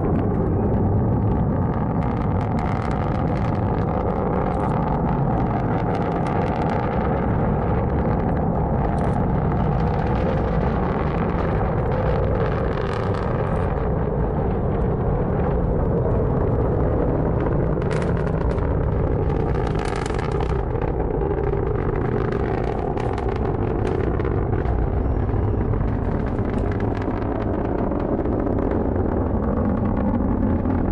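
Atlas V 401 rocket's RD-180 first-stage engine heard from a few miles away: a steady, deep rumbling roar broken by irregular bursts of crackling.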